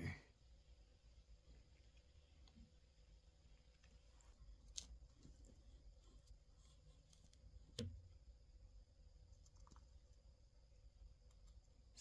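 Near silence: faint room tone with two small sharp clicks, about five and eight seconds in.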